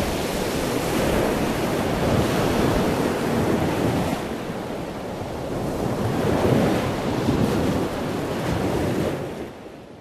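Sea surf washing on a rocky shore, with wind buffeting the microphone; the wash swells and eases every few seconds, then fades out near the end.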